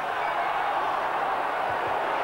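Steady noise of a football stadium crowd, an even wash of many voices with no single shout or chant standing out.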